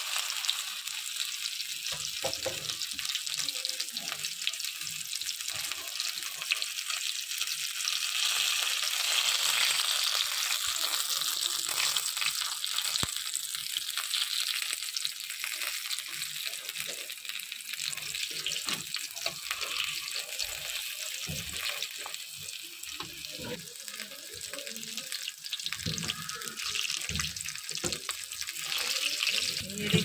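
Flour-dough vegetable rolls frying in hot oil in a pan: a steady bubbling sizzle, with occasional light clicks as a ladle turns them.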